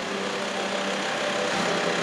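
Ambulance van's engine running steadily as the van rolls slowly forward.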